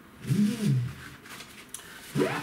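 A man's short hummed hesitation sound, rising then falling in pitch, followed by faint rustling of a fabric rod case being handled.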